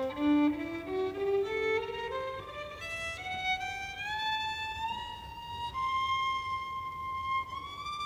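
Violin played with the bow, in a phrase that climbs note by note from its low register. It slides up between some notes and settles on long held high notes in the second half, rising once more near the end.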